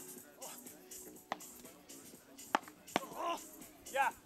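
Beach tennis paddles striking the ball in a rally: about four sharp knocks a second or so apart, over faint background music.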